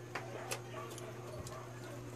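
A few faint, irregular clicks over a steady low hum.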